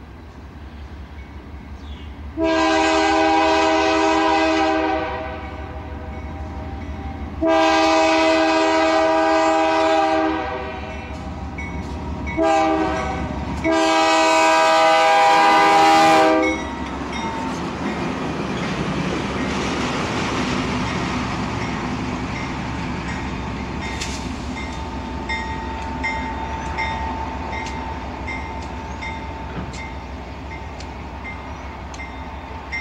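A BNSF diesel freight locomotive's multi-chime air horn sounds the grade-crossing signal: two long blasts, a short one and a final long one. The train then rolls past with a steady rumble and the clicking of wheels over the rail joints.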